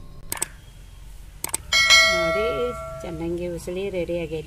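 Subscribe-button sound effect: a couple of mouse clicks, then a single bell ding a little under two seconds in that rings out for about a second and a half.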